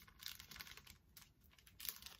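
Faint crinkling of a small clear plastic jewelry bag handled between the fingers, a few short crackles with the loudest near the end.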